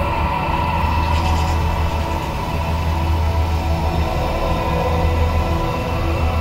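The volcano show's soundtrack through outdoor loudspeakers: a steady deep rumble under held, droning music tones.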